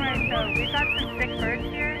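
A high electronic alarm tone warbling rapidly up and down, about four to five sweeps a second, with people's voices under it.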